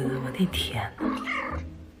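A kitten meowing twice over background music with a steady beat.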